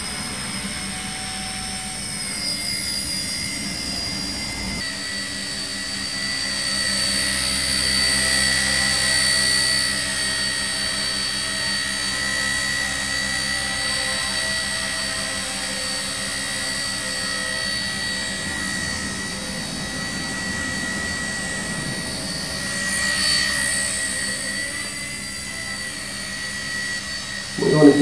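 Small electric collective-pitch RC helicopter (Blade Nano CP X) hovering: a steady high-pitched motor whine with the buzz of its rotor blades. The pitch and loudness shift a little as the throttle and pitch are corrected to hold it still.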